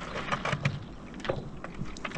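Stand-up paddleboard moving over calm water: the paddle blade dips and pulls, with an irregular patter of small splashes and water lapping at the board's nose.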